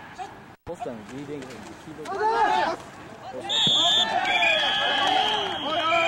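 Voices shouting at a football game, then officials' whistles blowing about three and a half seconds in and held for a couple of seconds, signalling the end of the play.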